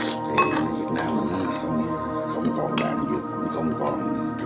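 Background music with steady held tones, over which utensils clink sharply against ceramic dishes: twice near the start and once about three seconds in.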